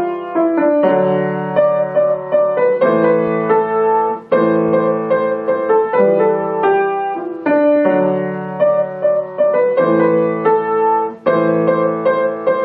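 Grand piano played solo: a melody line over held low chords, with the phrases breaking off briefly about four seconds in and again near the end.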